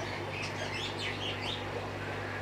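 Faint bird chirps: a quick run of short twittering notes in the first second and a half, over a steady low hum.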